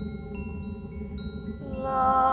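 Electronic music: scattered bell-like tones, each struck at a different pitch and left ringing, over a steady low drone. A held, voice-like note with several overtones comes in near the end.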